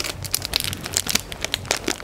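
Clear cellophane wrapping on small bags of sweets crinkling as they are rummaged through and picked up by hand: a dense, irregular run of small crackles.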